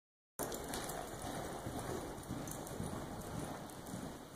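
Muffled hoofbeats of a horse loping on soft dirt arena footing, starting about half a second in.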